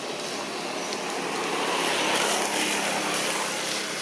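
A passing motor vehicle, its noise swelling to a peak about two seconds in and then fading.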